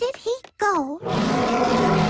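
Short, swooping cartoon-voice sounds, then about a second in a cartoon lion's roar starts and carries on loudly.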